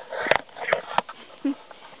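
Handling noise from a camera being passed from hand to hand: a few sharp knocks and a breathy rustle against the microphone. A short laugh comes near the end.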